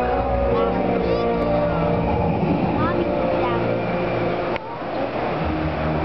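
Amplified show soundtrack in a large arena: sustained music chords over a deep low rumble, with a few short sliding tones. The sound dips abruptly about four and a half seconds in, then the rumble returns.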